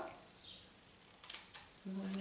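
A few short, quiet snips of scissors cutting through card a little past a second in, trimming off the overhanging edge.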